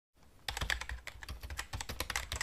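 Keyboard typing sound effect: a quick, irregular run of key clicks, starting about half a second in, laid over a title being typed out letter by letter.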